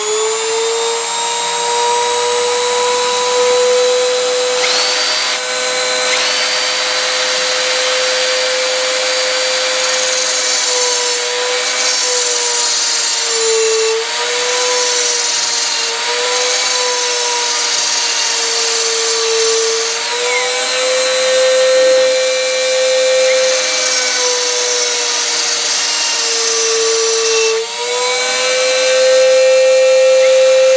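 Dremel-style rotary tool with a small diamond cutoff disc, just up to speed and running with a steady high whine as a tungsten welding electrode is ground to a point against the disc. Its pitch sags briefly several times, as the tool is loaded by the tungsten pressed against the disc.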